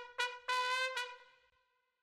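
Soloed trumpet track playing a short phrase: two quick notes, then a longer held note at about the same pitch that fades away about halfway through.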